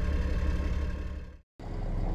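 Steady running of the Scorpion APC's Cummins 6.7-litre turbocharged six-cylinder diesel. It fades out about a second and a half in, and after a brief silence a deeper, steady engine rumble starts.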